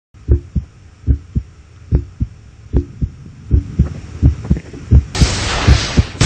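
A heartbeat sound effect: deep double thumps, lub-dub, about once every 0.8 seconds, coming slightly faster as it goes. About five seconds in, a loud wash of noise cuts in over the beats.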